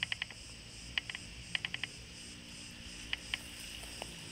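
Cricket chirping: short pulsed chirps of two to four quick clicks, repeating every half second to a second, over a faint steady background hum.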